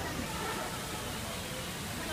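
Steady rushing background noise with faint, distant voices.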